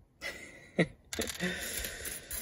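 A hand sweeping and rummaging through a pile of loose plastic Lego minifigures and parts: a dense, continuous clatter of small plastic pieces knocking together, starting about a second in.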